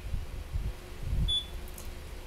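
Low rumble with faint background hiss, and one short high-pitched beep a little over a second in.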